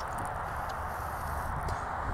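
Water sprinkling from the rose of a plastic watering can onto loose garden soil, a steady hiss.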